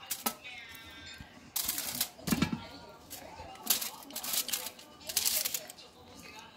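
Aluminium foil crinkling and dry beef jerky pieces rustling as they are handled on a foil-lined baking tray, in several short crackly bursts.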